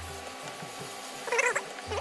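A short, wavering, high-pitched call about one and a half seconds in, with a low steady hum before and after it.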